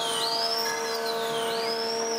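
An electronic siren or alarm sweeping up and down in pitch, high-pitched, with a quick rise and a slower fall repeating about every 1.3 seconds, over a steady low hum.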